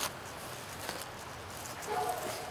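A few faint footsteps on the ground over a steady hiss of distant road traffic.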